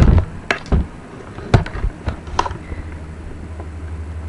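Handling knocks and bumps as a webcam is carried across a kitchen and set down facing an oven. A few sharp knocks come in the first two and a half seconds, over a low steady hum.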